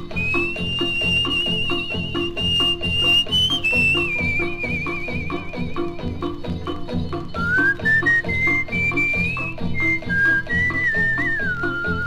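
Instrumental passage of a 1950s Italian popular song played by a dance orchestra. A steady rhythmic accompaniment runs under a high, pure-toned lead melody with vibrato, which holds a long note and then steps down through a short phrase.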